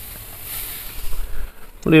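Slices of beef rump cap (maminha) sizzling on a hot barbecue grill grate as they are given a quick sear, a steady hiss that dies down about a second and a half in.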